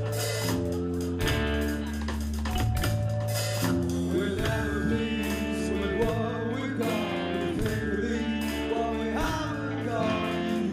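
Live rock band playing: electric guitar and drum kit with a low bass line, and a singer's voice entering about four seconds in.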